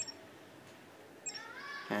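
Two short, high-pitched clicks from a Micromax Canvas 2 smartphone's touch-feedback sound as its screen is tapped, about a second and a half apart.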